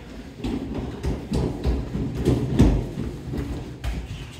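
Boxing gloves striking in quick, irregular thuds and slaps, several a second.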